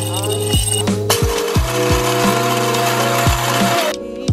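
Electric blade coffee grinder running, a steady grinding noise that starts about a second in and stops just before the end. Background music with a steady deep beat plays throughout.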